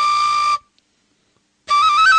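Film-score music from a solo flute-like wind instrument holding one steady high note, which breaks off about half a second in. After about a second of silence it comes back with a quick ornamented run of notes stepping up and down.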